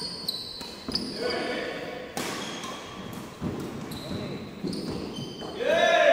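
Badminton doubles rally on a wooden indoor court: sharp racket strikes on the shuttlecock, short high shoe squeaks on the floor, and players' voices, with a loud shout near the end.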